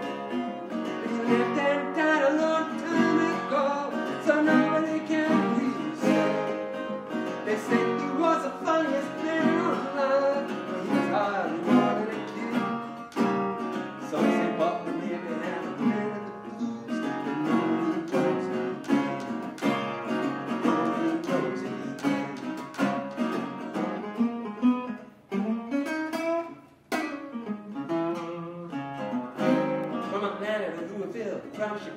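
Resonator guitar played through an instrumental break of a blues song, with notes and chords picked and some sliding pitches, and two short pauses near the end.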